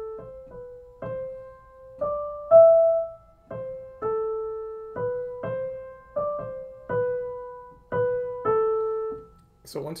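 A piano picking out a slow single-line melody one note at a time, about fifteen notes in the middle register, each struck and left to ring and fade, as a melody is tried out interval by interval. The loudest note comes about two and a half seconds in.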